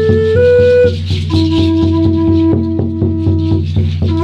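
A large wooden flute plays a slow melody, holding one long lower note through the middle, over a steady beat of a frame drum and a shaken rattle.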